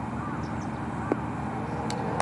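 Steady outdoor golf-course ambience: an even low hiss with a few faint short chirps.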